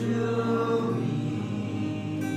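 Worship music: voices singing a held phrase together over acoustic guitar and keyboard.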